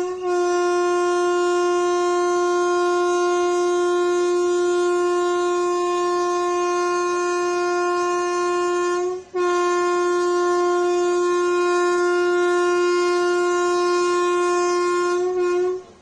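Air horn of an Indian Railways WAP-7 electric locomotive sounding two long, loud, single-note blasts, the first about nine seconds long and the second about six, with a brief break between them. The horn is being sounded as the train is flagged off to depart.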